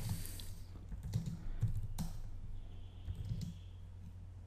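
Typing on a computer keyboard: a few scattered keystrokes as a short terminal command is entered, over a steady low hum.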